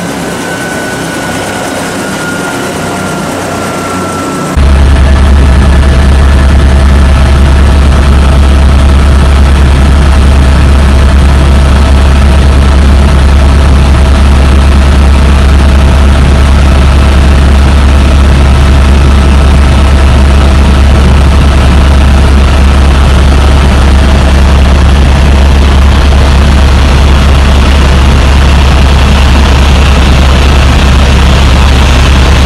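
Eurocopter AS350 helicopter's single turboshaft engine and rotor. A quieter stretch with a slowly falling whine gives way abruptly, about four and a half seconds in, to the loud, steady low drone heard inside the cabin in cruise flight.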